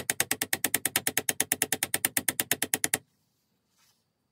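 Rapid, even ratchet clicking, about ten clicks a second, from the pawls of a Sturmey-Archer AG 3-speed hub as an internal part is turned by hand on its axle. The clicking stops abruptly about three seconds in, followed by one faint tick near the end.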